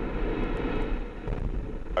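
Ariane 5's Vulcain 2 cryogenic main engine running on the pad just after ignition, before the solid boosters light: a steady rushing rumble of rocket exhaust.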